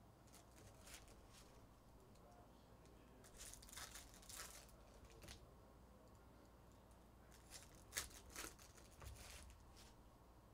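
Faint tearing and crinkling of Topps Chrome trading-card pack wrappers as packs are opened and handled, in short bursts: a cluster about three to four and a half seconds in and another near the end, with a sharp snap about eight seconds in.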